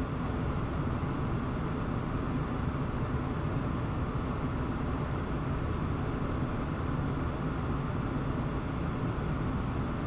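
Steady low hum and hiss of background room noise during a silent pause, with a couple of faint ticks about halfway through.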